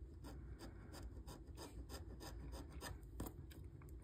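Coin scraping the scratch-off coating of a lottery ticket: faint, quick rasping strokes, about four a second.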